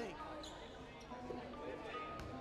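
Basketball gymnasium ambience during a stoppage in play: faint, echoing voices from the court and stands, with a few short high squeaks.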